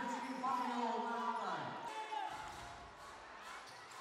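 A basketball being dribbled on a hardwood court, a few bounces, under faint voices in the arena. It grows quieter in the second half.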